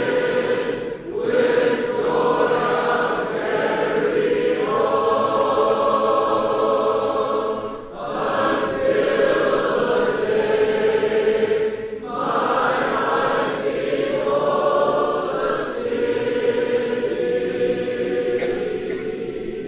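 A choir singing slow, long-held chords in phrases, with brief breaks between phrases every few seconds.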